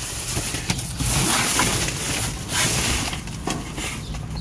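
Plastic bags and cardboard rustling and crinkling irregularly as trash is shifted about by hand inside a dumpster.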